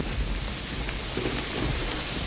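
Steady hiss of rain with a low rumble underneath.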